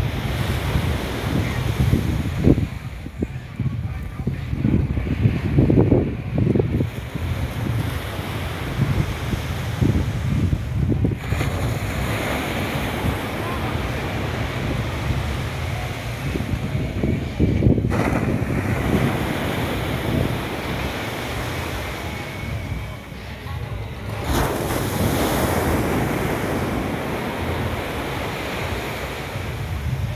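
Wind buffeting the microphone in gusts, with small surf waves washing onto a sandy beach.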